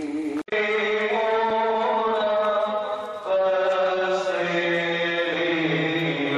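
Slow devotional chanting: held sung notes that change pitch every second or so. The sound cuts out for an instant about half a second in.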